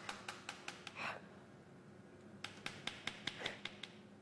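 Two runs of quick, even clicks, about five a second, one in the first second and another from about two and a half seconds in, with a short breath between them and another near the end of the second run.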